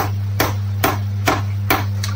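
Light metal-on-metal hammer taps, five of them at about two a second, on an M10 bolt screwed into the centre of a power steering pump, driving the pump shaft out through its pulley. A steady low hum runs underneath.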